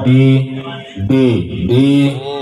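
A man's voice over a PA loudspeaker system during a vocal microphone check, repeating drawn-out syllables, 'dee… dee dee', in a steady pitched chant with short gaps between them.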